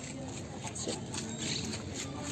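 Faint chatter of people nearby, with light footsteps of someone walking past.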